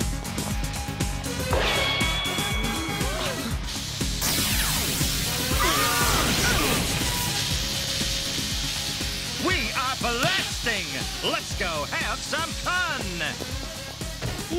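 Cartoon electrical zapping sound effect over background music: a loud crackling hiss sets in suddenly about four seconds in and fades over several seconds.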